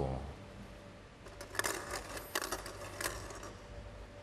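Plastic draw balls clicking against each other and the clear draw bowl as a hand picks through them: a handful of light, sharp clicks spread over about two seconds, starting about a second in.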